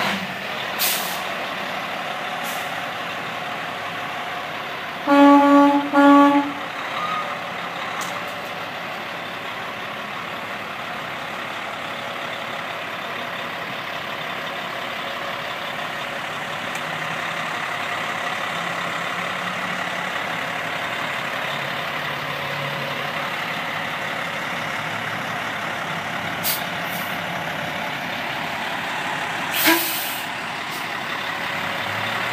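Semi-truck's diesel engine running steadily as the truck creeps forward out of a shop bay. About five seconds in its horn sounds in three quick blasts, and a few brief sharp hisses of air come and go.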